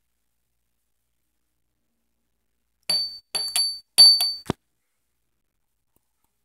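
Small glass glitter vial tapping against the rim of a glass bowl to shake glitter out. About three seconds in comes a quick run of about half a dozen sharp clinks with a high ring, ending in a drier click.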